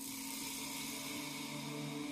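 Quiet documentary underscore: sustained, steady low tones with a faint hiss, and a lower note coming in about a second in.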